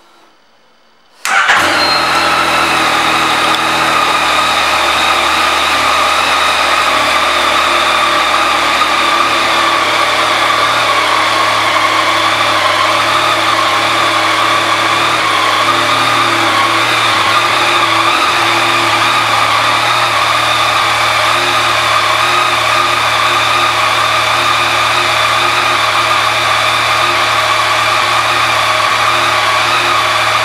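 2019 Yamaha Tracer 900's 847 cc inline three-cylinder engine starting about a second in, then idling steadily.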